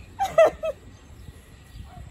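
A baby whimpering: a few short, high cries in the first half-second. She is scared, held in the pool water.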